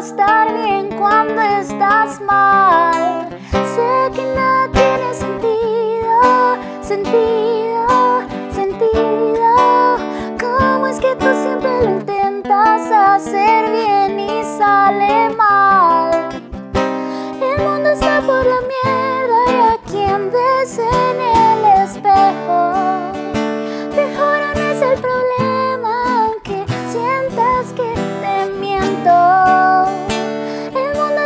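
A woman singing a Spanish-language pop ballad live, accompanied by a strummed acoustic guitar.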